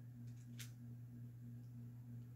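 Near silence with a faint, steady low hum, and a single faint click about half a second in.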